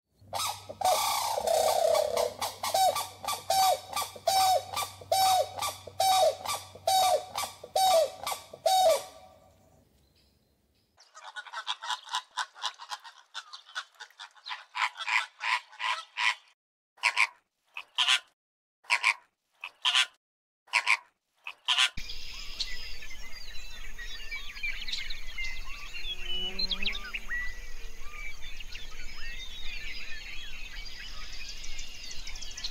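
A series of bird calls: a call repeated about twice a second for nine seconds, then after a short pause a quick run of calls followed by single calls about once a second. From about 22 seconds in, a steady background of many small birds chirping takes over.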